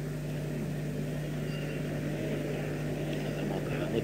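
A steady low hum on one unchanging pitch over faint background noise, with no speech.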